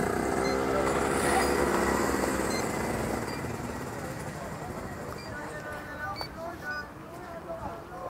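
A vehicle engine running, fading away over the first three seconds. After that it is quieter, with faint short high beeps and distant voices.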